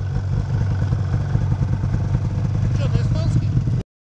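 Snowmobile engine running steadily while travelling over snow, with a brief faint call about three seconds in. The sound cuts off suddenly just before the end.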